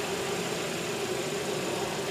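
2011 Hyundai Sonata's engine idling steadily.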